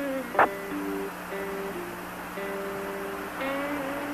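Background music: a slow line of held notes changing pitch every second or so, over a steady low hum, with a brief click about half a second in.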